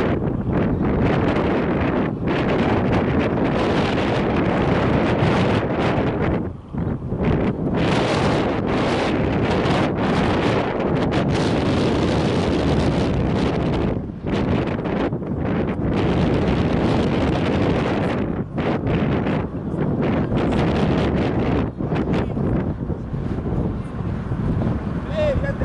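Wind buffeting the camera's microphone: a loud, continuous rushing rumble with a few brief lulls.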